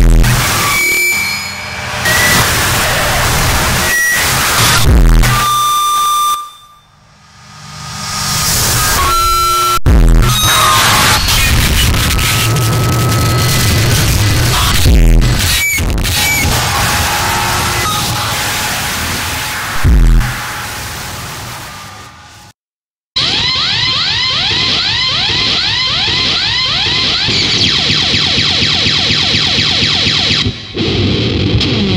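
Harsh noise music: a dense wall of distorted noise punctuated by heavy low booms about every five seconds, thinning out briefly about seven seconds in. It cuts out for a moment past the two-thirds mark, and a new texture of rapidly repeating falling pitch sweeps over hiss takes over.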